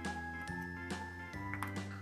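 Soft background music of held notes over a slow, changing bass line, with a few light clicks from a plastic egg being pulled open.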